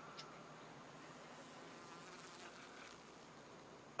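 Near silence: faint, steady outdoor ambience with a light insect buzz.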